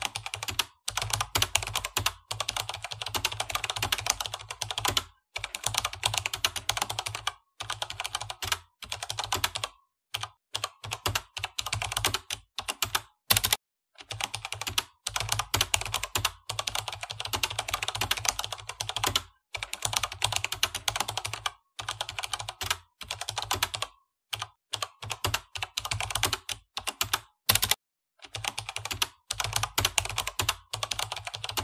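Keyboard typing: rapid runs of key clicks, each run lasting from about a second to several seconds, separated by short pauses.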